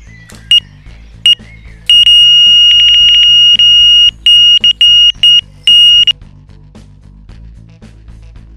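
Electronic carp bite alarm sounding a run: two single high bleeps, then an almost unbroken tone for about two seconds, then a string of quick bleeps that stops about six seconds in. This is the sign of a fish taking line from the rod. Background music plays underneath.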